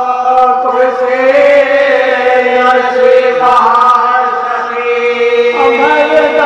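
Men chanting a marsiya, an Urdu elegy, in unison: a lead voice with others joining, on long held notes that glide slowly from pitch to pitch.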